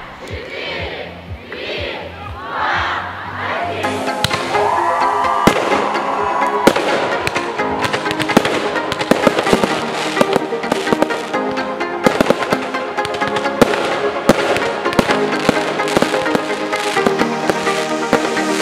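A few whooshing sweeps, then from about four seconds in a dense run of firework bangs and crackles from aerial shells bursting, under music with steady held notes.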